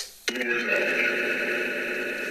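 Spirit box output: a steady droning sound of several held pitches that starts suddenly about a quarter of a second in, after a short loud burst cuts off.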